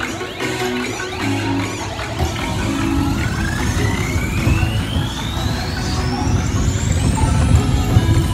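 Music playing, with a long rising electronic sweep that climbs steadily in pitch from about three seconds in until near the end, over a steady low rumble.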